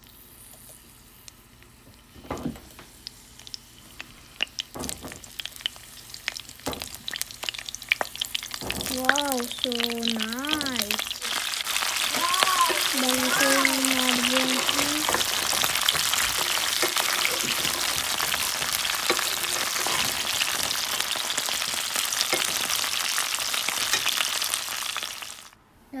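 Cauliflower florets frying in hot oil in a pan. A few sparse crackles at first give way, about eight seconds in, to a loud, steady sizzle that cuts off suddenly near the end.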